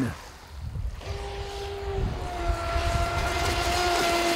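AquaCraft Revolt 30 fast-electric RC boat's brushless motor whining at full speed. The steady high whine begins about a second in and drops a little in pitch about two seconds in.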